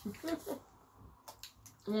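A few faint, sharp clicks of someone chewing a hard peanut butter chocolate truffle, between a voice trailing off at the start and a hummed "mmm" near the end.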